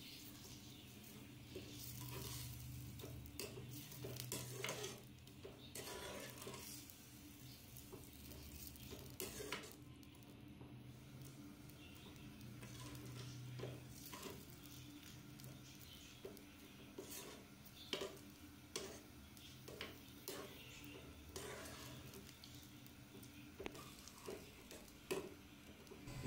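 A metal spoon stirs vermicelli in sugared water in an aluminium kadhai, with faint, irregular clicks and scrapes of the spoon against the pan. A low steady hum runs underneath.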